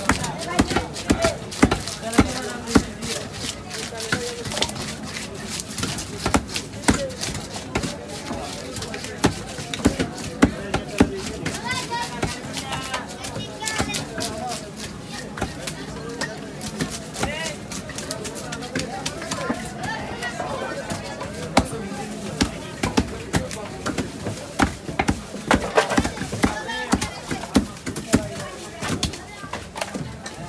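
Large knife chopping through pieces of catla fish on a wooden block: many sharp chops and knocks at an uneven pace, with voices in the background.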